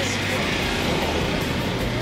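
Steady drone of vehicle engines running, with no distinct event standing out.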